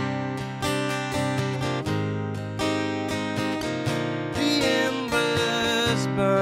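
Acoustic guitar strummed steadily, ringing chords in a slow folk-country accompaniment.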